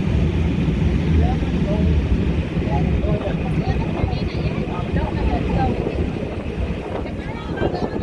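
Wind rumbling on the microphone, with indistinct chatter from people standing nearby.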